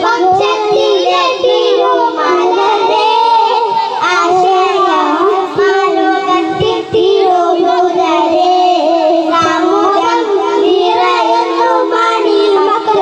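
Three young boys singing a melodic song together into microphones, the voices amplified, held in long continuous lines with only brief breaths.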